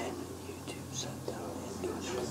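A person whispering faintly, over a low steady hum.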